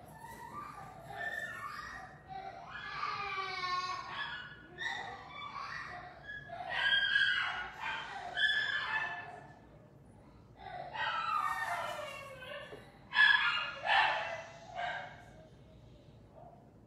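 A young girl crying off-camera, in several spells of high-pitched wailing and sobbing with short pauses between them.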